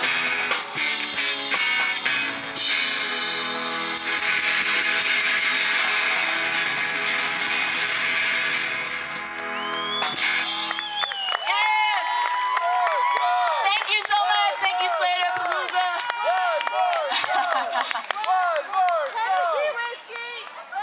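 Live rock band with drums, electric guitar, bass guitar and keyboard playing the end of a song. About halfway through the music stops, and cheering and shouting voices follow.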